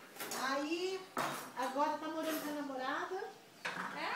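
Dishes and cutlery clinking in a few sharp knocks, with indistinct voices talking over them.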